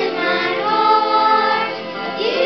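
A group of young children singing a song together over recorded music accompaniment, holding one note for about a second in the middle.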